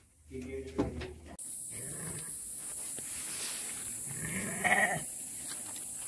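A Garut sheep bleating once, loudly, about four and a half seconds in. A steady high-pitched hiss runs behind it from about a second and a half in.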